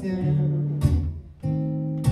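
Acoustic guitar strumming chords between sung lines: three strums whose chords ring on, with a brief drop in level just before the last one.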